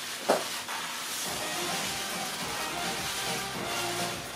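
Press photographers' camera shutters firing rapidly all together, a dense hissing clatter, with one sharper click about a third of a second in. Faint background music underneath.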